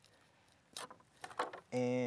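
Plastic cheese packaging being opened: a second or so of scattered sharp crinkles and crackles. Near the end a man's voice comes in with a long, drawn-out "and".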